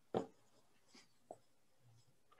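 Writing on paper, faint: one sharp tap just after the start, then two fainter ticks about a second in.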